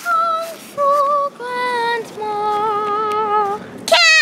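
A girl singing four held notes without words, each lower than the last, the last and longest with a wavering vibrato.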